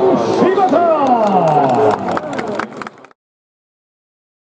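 Several voices echoing around a baseball stadium at once, with drawn-out calls that fall in pitch and scattered sharp clicks. The sound cuts off suddenly about three seconds in, leaving digital silence.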